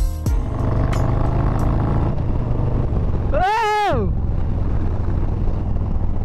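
Harley-Davidson Street Bob 114's Milwaukee-Eight V-twin engine running steadily under way, heard from the rider's seat with wind. About three and a half seconds in, one short high scream rises and falls over it.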